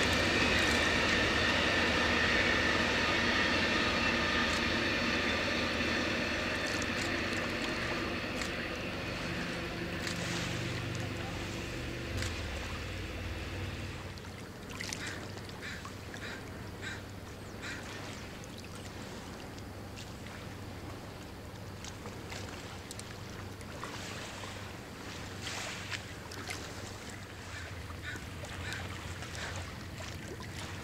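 Amtrak Coast Starlight passenger train rolling past on shoreline track, a steady wheel rumble with a high steady whine, fading as the train moves away over the first dozen seconds or so. After that, a quieter stretch with scattered short sharp sounds.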